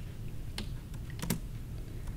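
A few sharp, isolated clicks like keyboard keystrokes: one about half a second in, then a quick pair just past a second.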